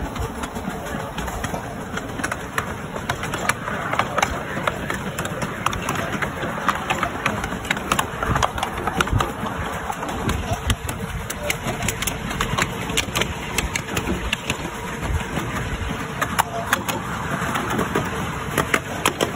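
Miniature steam train running along the track, heard from an open passenger wagon: steady running rumble with many sharp, irregular clicks and knocks of the wheels over rail joints and points.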